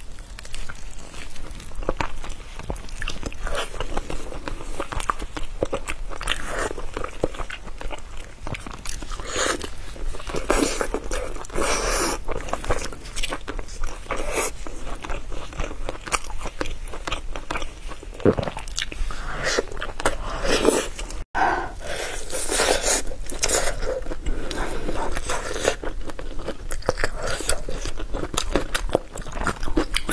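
Close-miked mouth sounds of biting and chewing sauce-coated meat on the bone: irregular bites and chews throughout, with occasional crunches. A split-second gap comes about two-thirds of the way through.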